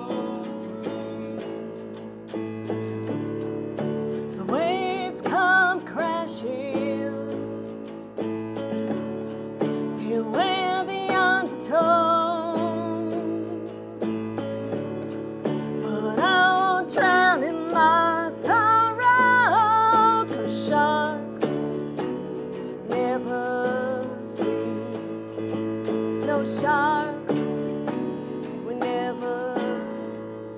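Live song on archtop electric guitar and electric keyboard, with a woman singing a melody with strong vibrato over the chords. The music fades out at the end.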